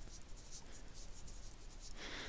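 Pen writing on paper: faint, quick scratching strokes as a word is written out.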